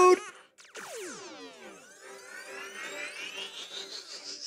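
Cartoon ray-gun sound effect from the shrink ray: a fast falling synthetic sweep about a second in, then a long, slower rising sweep that builds toward the end.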